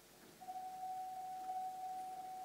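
A single steady electronic tone at one pure pitch, starting about half a second in and holding. It is a time signal, which the speaker takes as coming a little early.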